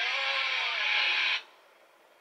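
Television sound heard through the set's speaker: a voice holding long, gliding tones, humming or drawn-out singing, that cuts off abruptly about one and a half seconds in, leaving near silence.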